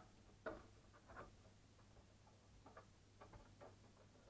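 Faint clicks and light taps as an RC crawler's body shell is set down and fitted onto its raised body posts: one sharper click about half a second in, then a few light ticks.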